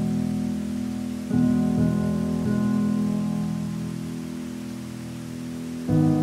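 Slow instrumental piano: notes struck a little after a second in, twice more soon after, each slowly dying away, and a new chord right at the end. Steady rushing water runs underneath.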